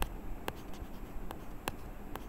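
A stylus writing on a tablet surface: a series of short, sharp ticks, roughly two or three a second, as the pen strokes down.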